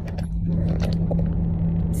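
Steady low rumble and hum of a tour bus running, heard from inside, with a few light clicks and rustles from handling the phone.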